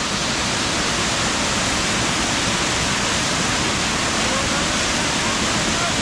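Small waterfall pouring over a rock ledge into a pool close by: a steady, even rush of falling water.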